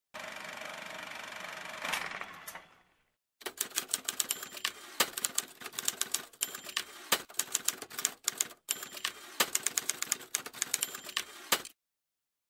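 Rapid, irregular mechanical key clicks in quick runs with short breaks, like typing, as part of an opening sound ident. Before the clicking there are a few seconds of steady hiss with one louder hit about two seconds in, then a brief silence.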